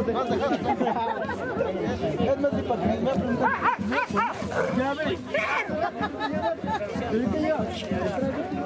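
Several people chatting and talking over one another, with a dog barking among the voices.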